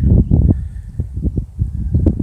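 Low, irregular rumbling and thumping noise on the microphone, with no clear sound above it.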